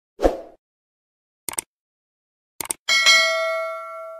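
Subscribe-button animation sound effects: a short thump, then two mouse clicks about a second apart. A bright bell-like ding follows and rings on, fading slowly.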